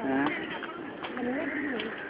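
Several people talking at once, overlapping voices, with one voice loudest right at the start.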